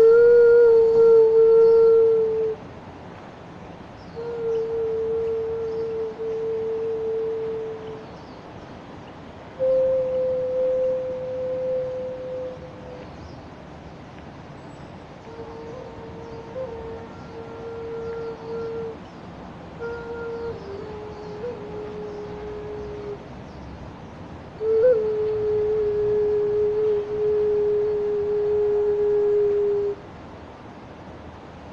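Xun, a Chinese clay vessel flute, playing a slow melody of six long held notes with short breaths between them, all on a few close, low-middle pitches. The notes have a pure, hollow tone, and a couple begin with a brief grace note or step down partway. The first and last notes are the loudest.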